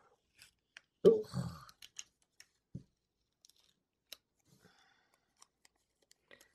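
Faint, scattered clicks and rustles of a paper sticker being lifted and peeled off a planner page and handled.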